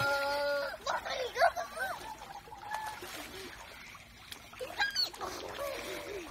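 Children squealing and shouting while splashing in a pool: a held high-pitched squeal at the start, quick wavering shrieks after it, and another shrill squeal near the end, with water splashing beneath.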